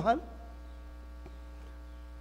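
Steady low electrical mains hum, with the end of a man's word through a microphone right at the start.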